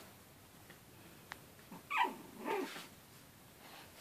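A puppy gives two short, high-pitched yips close together about two seconds in, while playing; a single small click comes just before.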